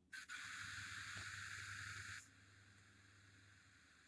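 Near silence: a faint steady hiss from the call audio that cuts off about two seconds in, over a faint low hum.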